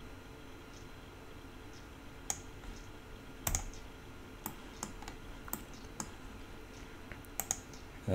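Sparse clicks from a computer keyboard and mouse, about ten spread over the last six seconds, the loudest a quick pair about halfway through, over a faint steady hum.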